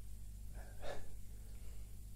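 A man's short, sharp breath, just before a second in, over a faint steady low hum.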